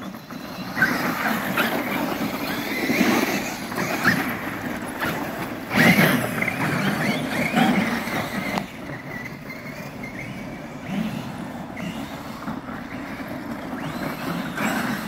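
Traxxas X-Maxx 8S electric RC monster trucks driving over snow and slush: brushless motors and drivetrains whining up and down with the throttle, along with tires churning the snow. The loudest surge comes about six seconds in.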